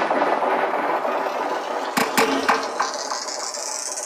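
Intro of a psytrance track: dense synthesized textures with no bass or kick drum, a few sharp hits about two seconds in, and a hiss rising steadily in pitch through the second half.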